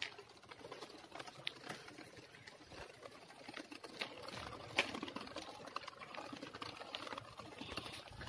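Mountain bike rolling over a rough dirt lane: faint, irregular ticking and rattling from the knobby tyres and the bike's parts, with one sharper click about five seconds in.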